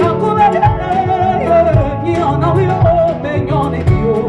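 Live band music: a woman's voice sings a wordless, wavering melody over electric bass, guitar and a drum kit.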